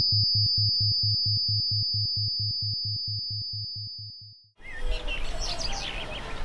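Background electronic music, a low beat pulsing about four to five times a second under a steady high tone, fading out over a few seconds and stopping about four and a half seconds in. It gives way abruptly to outdoor ambience with birds chirping.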